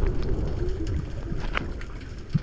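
Underwater sound picked up by a camera in a waterproof housing: a muffled low rumble of water moving around the camera as the diver swims through kelp, with scattered faint clicks and crackles.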